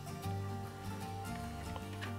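Soft background music with held notes that change pitch every so often.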